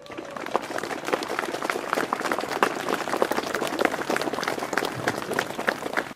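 A crowd applauding: dense, irregular clapping that starts up at once, then is cut off abruptly at the very end.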